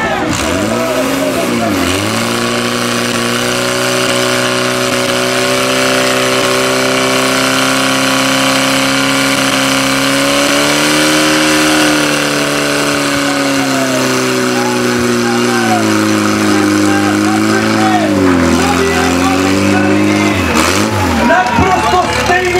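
Portable fire pump's engine running at high revs, holding one steady pitch that dips sharply about a second and a half in, climbs a little around halfway and drops again with several quick dips near the end.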